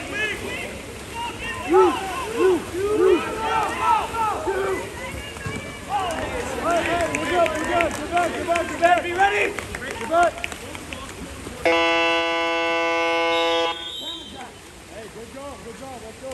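People shouting around a water polo pool, then near the end a loud, steady game horn sounds for about two seconds and cuts off, signalling the end of the first quarter.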